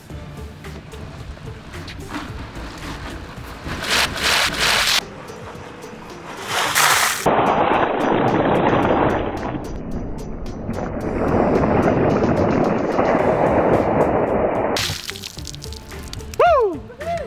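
Ice water pouring from a plastic bin over a man's head and splashing onto him and the ground, a loud, noisy pour from about seven seconds in that lasts about eight seconds, over background music.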